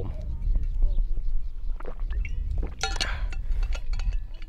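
Drinking from an insulated metal water bottle: a few swallows and small clinks of the bottle, with a breathy exhale about three seconds in. Wind rumbles on the microphone underneath.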